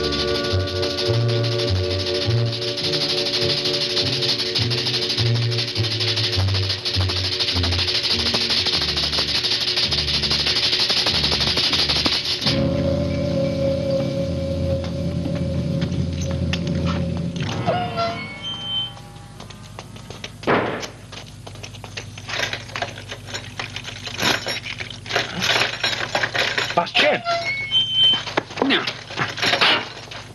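Film soundtrack music: low notes shift under a loud hiss for about twelve seconds, then a held chord sounds for about five seconds. After that, sparse knocks and clatter take over.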